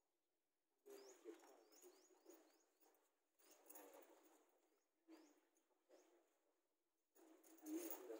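Faint bird chirps: short rising calls, several in quick succession about a second in and more around five seconds, among a few quiet bursts of other sound.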